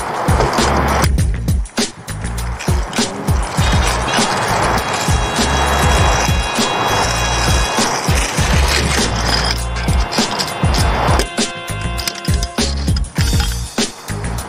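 Freeline skates' small wheels rolling and grinding over rough asphalt in stretches, under a background music track with a heavy bass.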